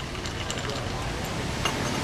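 Steady hum of street traffic and city background, with a light clink near the end as a ceramic coffee cup is set down on its saucer.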